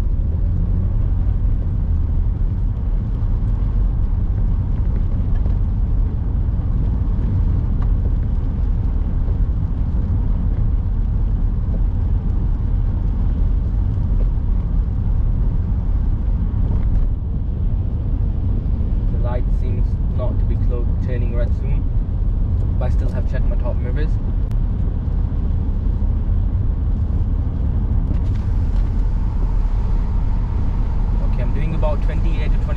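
Steady in-cabin car noise while driving on a wet road: a low engine and road rumble with tyre hiss from the wet tarmac.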